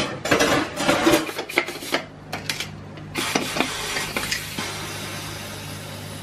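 Pots and lids clattering on a stovetop for about three seconds, then a sudden steady hiss of steam from a stovetop pressure cooker as its pressure is released, slowly fading.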